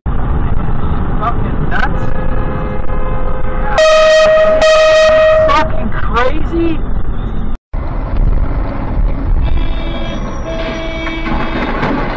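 Car horn sounding over dashcam road rumble: a steady horn note about two seconds in, then a louder, longer blast from about four seconds to about five and a half seconds.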